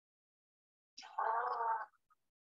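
A man's short vocal sound about a second in: a brief breathy hiss, then a held voiced tone lasting well under a second.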